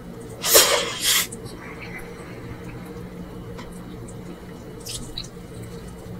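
Close-up eating sounds of mansaf eaten by hand: two loud, short wet mouth noises near the start as a mouthful of jameed-soaked rice and lamb goes in, then soft clicks of chewing.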